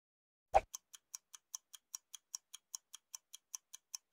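Clock-style ticking sound effect, about five ticks a second with alternating louder and softer ticks, opening with a sharper click about half a second in.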